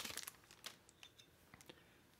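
Faint crinkling of a clear plastic sleeve as a knife is drawn out of it, dying away within the first half second. A few faint clicks follow, then near silence.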